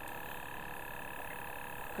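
Steady hum of several held tones, even in level, as from a small motor running.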